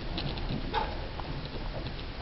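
Pet rat nibbling and chewing grass blades: a few small, crisp clicks and crunches, irregularly spaced, over steady background noise.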